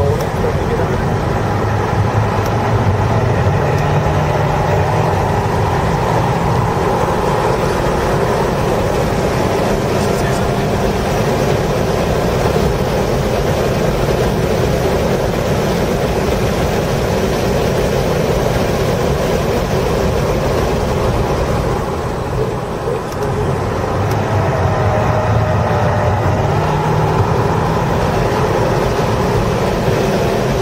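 Audi A5's engine heard from inside the cabin, running at high revs under hard acceleration, with steady road and wind noise. There is a brief dip in level about three quarters of the way through.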